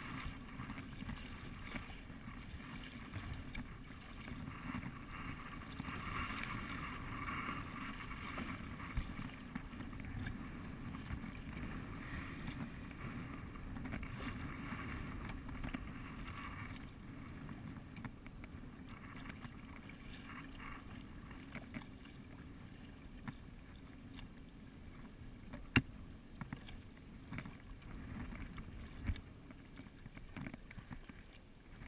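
Water rushing and splashing against the hull of a kayak being paddled through riffles, over a steady low rumble of wind on the microphone, with the splashing louder in stretches. One sharp knock comes near the end.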